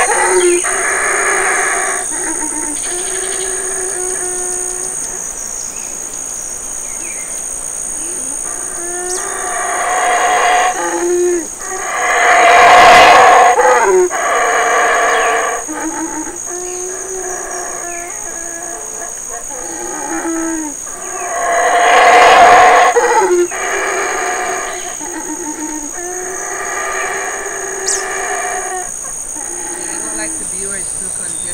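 Male Yucatán black howler monkey howling in long, repeated deep bouts that swell and fade, loudest about a third of the way in and again past the middle, over a steady high-pitched buzz.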